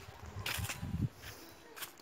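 Faint rustling with a few short, soft crackles, as of someone moving among dry plants.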